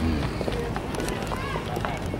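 People talking in the background, with a steady low rumble and a few short chirps.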